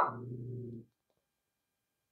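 A dog gives one short bark that trails into a lower, steady sound lasting under a second.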